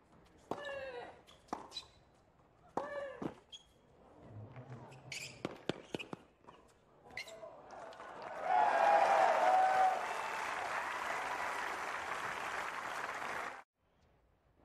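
Tennis rally: a string of sharp racket strikes on the ball, with two short grunts from a player early on. After the point ends, a crowd applauds and cheers loudly for several seconds, and the applause cuts off suddenly near the end.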